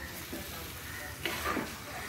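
A spoon stirring chunks of mango cooking in oil in a black pot, over a low, steady sizzle, with a short louder scrape about one and a half seconds in.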